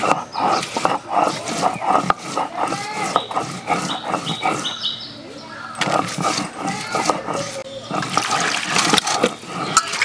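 Stone roller grinding onion on a flat stone slab (shil-nora): repeated scraping and knocking strokes of stone on stone. Near the end, water splashing in a bowl.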